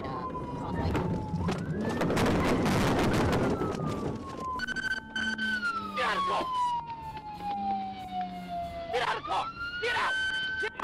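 Police car siren wailing, its pitch sliding slowly down and back up several times. A loud rush of noise covers it about two to four seconds in.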